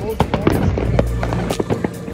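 Fireworks going off: many irregular sharp bangs and crackles, one after another.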